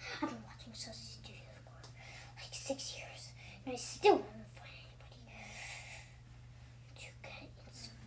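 A child whispering and making short breathy vocal noises, including a falling voiced sound about four seconds in, over a steady low hum.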